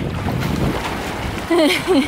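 Sea water sloshing and splashing right at a microphone held at the water's surface, with wind buffeting the mic. A voice speaks briefly near the end.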